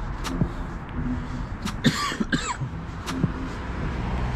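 A person coughing briefly about halfway through, over a low steady background rumble and a few sharp ticks.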